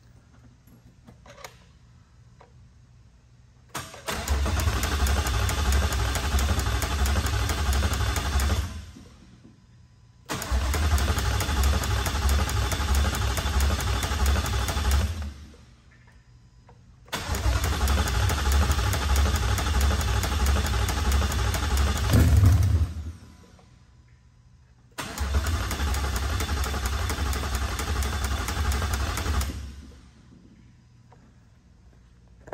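Gen 3 Ford Coyote 5.0 V8 being cranked by its starter in four attempts of about five seconds each, with pulsing low-pitched cranking and pauses between, on a first start with the fuel pump hot-wired; none of the attempts settles into a steady idle.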